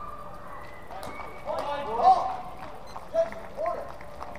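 Raised voices calling out around a longsword sparring ring, loudest about two seconds in, with a few sharp clacks from the sparring just before.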